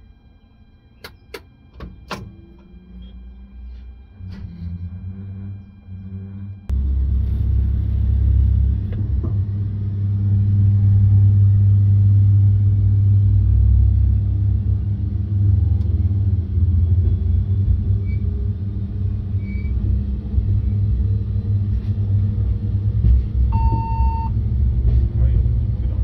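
Corail passenger train heard from its front cab while running along the track: a steady low rumble that jumps sharply louder about a quarter of the way in and stays loud. A short beep sounds near the end.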